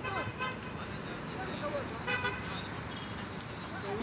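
Street traffic with two short car-horn toots, one about half a second in and another about two seconds in, over a steady low hum of vehicles and faint voices.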